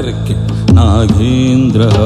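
Devotional background music: a chanted mantra, one voice holding long, slightly wavering notes over a low steady drone.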